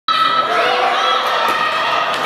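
Many children shouting and cheering at once, high-pitched and overlapping, in a gym hall.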